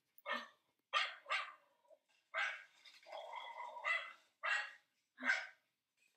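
A dog barking repeatedly: about eight short barks at irregular spacing, with one longer, drawn-out bark in the middle.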